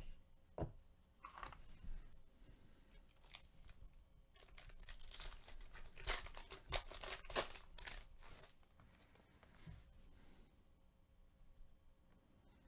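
A foil trading-card pack wrapper torn open by hand: a few light crackles, then a run of crinkly rips a little past the middle, the loudest near the end of the run.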